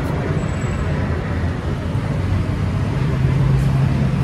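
Steady low rumble of road traffic, with a low hum coming in about three seconds in.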